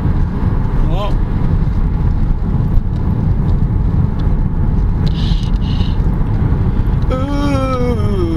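Steady low road and engine rumble inside a moving car's cabin. A man's voice goes "ooh" about a second in, and near the end he sings a long note that slides downward.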